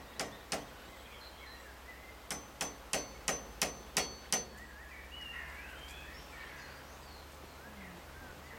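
A run of sharp metallic clangs, seven at about three a second, each with a short ringing, after a few scattered strikes near the start. Birds chirp and call, most in the second half.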